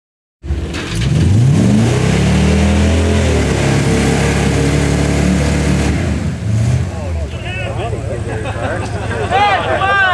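Off-road vehicle's engine revving hard while stuck in a mud trench: it cuts in about half a second in, climbs in pitch over the next couple of seconds, holds high, then drops back to a lower steady run about seven seconds in. Spectators shout over it near the end.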